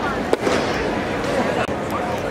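Ballpark crowd chatter with one sharp crack about a third of a second in, as a pitched baseball reaches the plate on the batter's swing.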